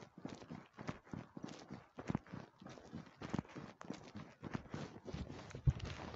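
Footsteps of a person walking on a hard surface at an even pace, a dull knock about every half second to second.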